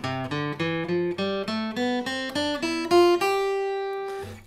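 Steel-string acoustic guitar playing the E Phrygian mode in open position, picked one note at a time at about four notes a second, ending on a note left ringing for about a second.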